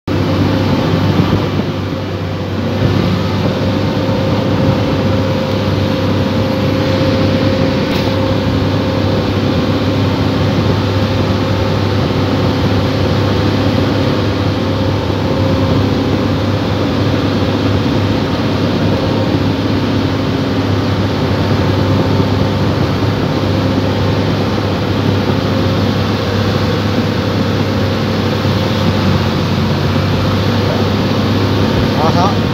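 Hydraulic excavator's diesel engine running steadily under work, heard from the operator's seat, with a constant low hum.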